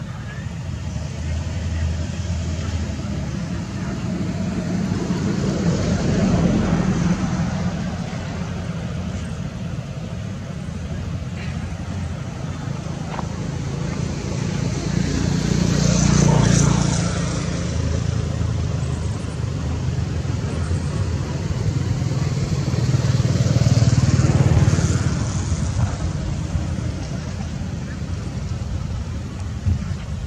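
Motor vehicles passing, each swelling and fading away, three times over a steady low rumble.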